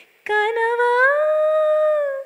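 A woman singing unaccompanied. After a brief pause she sings one long wordless note that slides up in pitch and is held.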